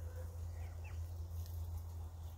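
Turkeys giving a couple of faint, short high peeps about half a second to a second in, over a steady low rumble.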